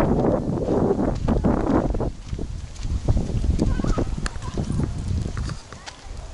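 Footsteps on a dirt path, a few steps a second, with wind rumbling on the microphone; the rumble eases near the end.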